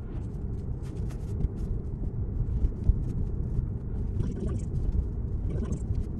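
Tesla electric car's steady low road and tyre noise heard from inside the cabin while driving.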